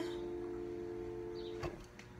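The held final chord of the backing music rings on after the singing stops, as a few steady, quiet tones. Near the end a sharp click comes and the chord cuts off.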